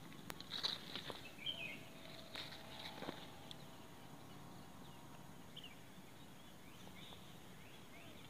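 Quiet outdoor garden background: a few soft knocks and rustles in the first three seconds, then a steady faint hiss with occasional faint bird chirps.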